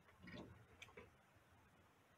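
Mostly near silence, broken in the first second by a soft brief rustle and then two light clicks close together, from a wall-mounted plastic gas leak detector being handled.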